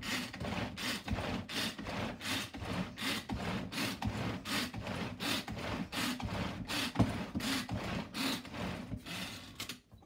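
Power Chef pull-cord mixer being cranked by its cord again and again, about two and a half pulls a second. Each pull gives a rasping whirr as the cord runs out and rewinds and the whipping paddle spins through a roasted-garlic mayonnaise aioli. There is one sharper click partway through, and the pulling stops just before the end.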